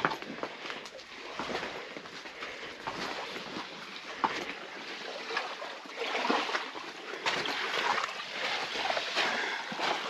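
Small waves lapping and washing on a sandy shore, a soft steady wash that grows a little louder about halfway through, with scattered light footsteps on stone and sand.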